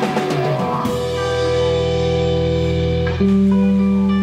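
Rock band playing live: full band with drums for the first second, then the drums drop out and electric guitar chords ring on, sustained. A new, louder chord is struck about three seconds in.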